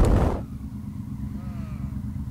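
Wind noise on a helmet camera at road speed, cut off sharply about half a second in. After that comes the low, steady rumble of a Triumph Tiger 800's three-cylinder engine running slowly in traffic.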